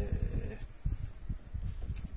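A man's drawn-out hesitation sound, 'eh', fading out about half a second in. Then faint, irregular low knocks and rubbing as a hand handles the tailstock of a small metal lathe.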